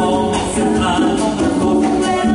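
Live band music with voices singing over piano, guitar, bass and percussion, the drum hits sounding now and then.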